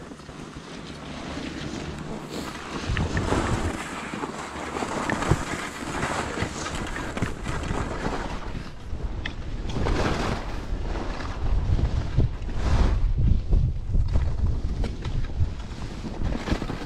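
Wind buffeting the microphone and skis hissing and scraping over snow on a downhill run, growing louder over the first few seconds as speed builds, with repeated surges through the turns.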